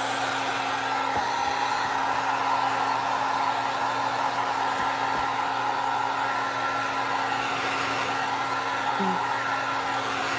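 Handheld electric heat gun running continuously, a steady rush of hot air over a constant motor hum, as it dries freshly splattered paint on a canvas.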